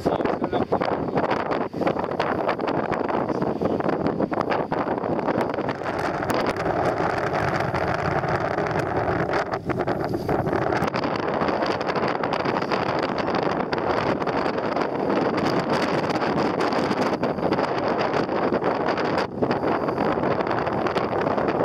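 Steady wind noise buffeting the microphone over the even running of a boat's engine.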